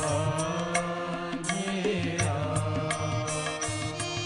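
Live Hindu devotional bhajan music: harmonium and a sliding melodic line over regular tabla strokes, played together as a small ensemble.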